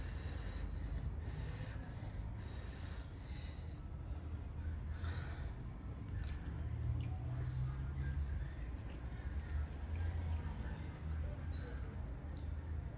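A person slurping and chewing spicy instant ramen noodles, with short hissy sucking sounds and clicks of the fork, and noisy breathing between mouthfuls from the chilli burn.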